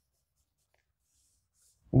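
Faint chalk scratching on a blackboard: a few brief, soft strokes over near silence.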